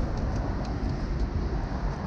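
Steady low outdoor rumble with a few faint light clicks as a plastic car grille is lifted free of its bumper.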